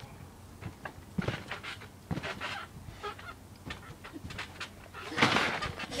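Someone doing kickovers on a small trampoline: scattered soft thuds and short rustling knocks, then a louder noisy crash about five seconds in as she runs into the trampoline's edge.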